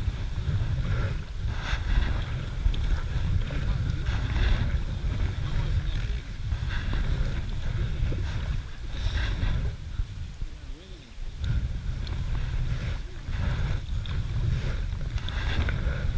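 Kayak paddling: a double-bladed paddle dips and splashes in the water every few seconds. A steady low rumble of wind on the microphone runs underneath and is the loudest part.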